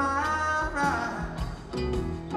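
A live rock band playing, with electric guitar, bass guitar and regular drum hits.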